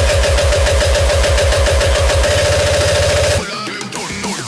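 Uptempo hardcore kick drum roll under a held synth tone, the kicks speeding up until they merge into one continuous drone. The build cuts off about three and a half seconds in to a quieter break.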